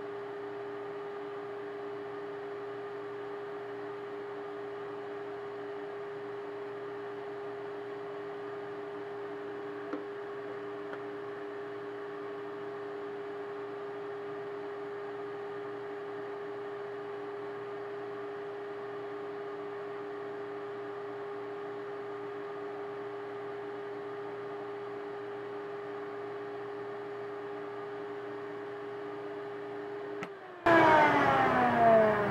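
Vacuum motor running steadily with a constant hum, pulling suction through the PVC pipe so the primer and glue are drawn into the crack in the fitting. A small click about ten seconds in.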